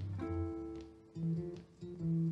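Acoustic guitar and archtop jazz guitar playing together: plucked single notes ringing over low bass notes, with a brief lull about a second in.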